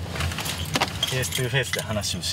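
Low steady rumble of a car driving slowly, heard from inside the cabin, with a light metallic jingling in the first second. A man's voice starts about a second in.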